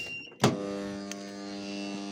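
A sharp click about half a second in, then a steady electrical hum from the KPE-30 cooking kettle's electrics, switched in by the click.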